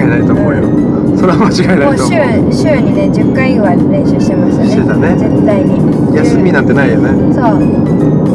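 People talking inside a moving car's cabin, over background music and a steady low hum of road and engine noise.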